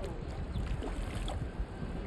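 Mandarin ducks splashing in shallow water as one dives, with light splashes about half a second to a second and a half in, over a steady rumble of wind on the microphone.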